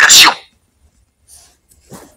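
A person's voice breaks off abruptly about half a second in, followed by near silence with two faint short breathy sounds.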